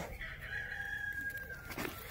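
Rooster crowing once: a single long call lasting about a second and a half, dropping slightly at its end.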